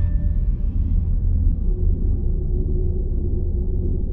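A deep, steady low rumble, a soundtrack drone. The tail of the preceding music fades out in the first second, and a faint held tone joins the rumble about a second and a half in.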